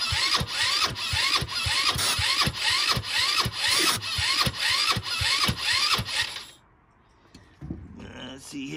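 Electric starter cranking a GY6 150cc single-cylinder four-stroke engine that has been primed with starter fluid, its whine rising and falling about twice a second as it works through each compression. It stops suddenly about six and a half seconds in without the engine catching.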